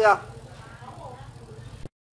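The end of a man's spoken word, then quiet room noise with a faint voice in the background. The sound cuts out completely just before the end.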